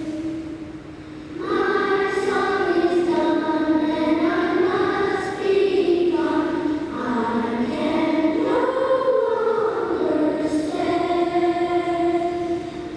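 A choir singing a melody in held notes of about a second each, dipping quieter about a second in and then swelling again.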